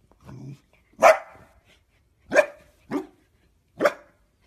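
A corgi barking sharply four times, down at a toy that has fallen off the couch, after a short, quieter low sound about a third of a second in.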